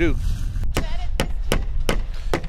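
Hammer striking at a construction site: five sharp blows at an uneven pace of about two to three a second, starting just over half a second in, over a low wind rumble on the microphone.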